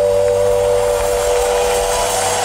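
A live band's final held chord rings out and fades, while crowd cheering swells underneath it.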